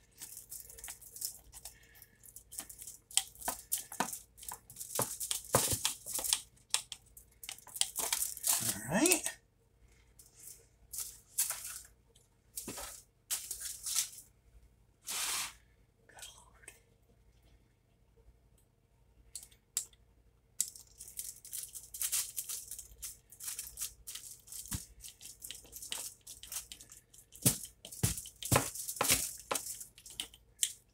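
Aluminium foil crinkling and rustling in irregular bursts, with light scrapes and clicks, as a pizza is handled and cut on a foil-lined baking sheet. The sound thins out to a few scattered clicks for a stretch in the middle.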